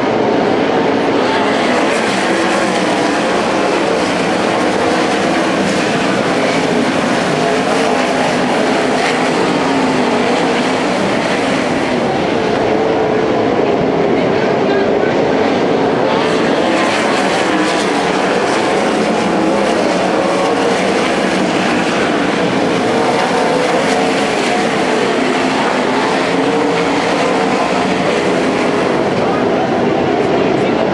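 A pack of winged dirt-track race cars racing around the oval, their engines loud and continuous, with the pitch wavering as the cars pass.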